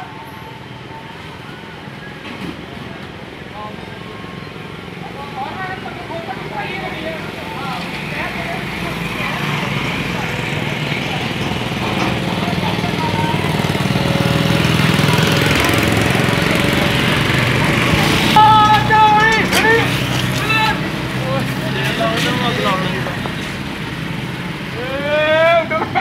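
Street traffic with motorcycles passing close by, the engine noise building up toward the middle and then easing off, with people's voices heard over it later on.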